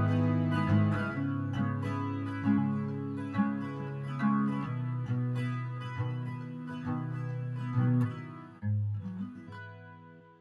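Acoustic guitar playing the song's instrumental ending, picking and strumming chords that ring on. The playing thins out, a last chord sounds about nine seconds in, and the notes die away.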